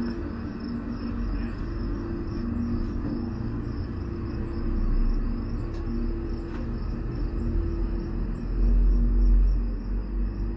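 Gondola cabin riding down its haul rope: a low rumble and steady hum, swelling to a louder rumble near the end. Insects chirp steadily in an even pulsing rhythm through it.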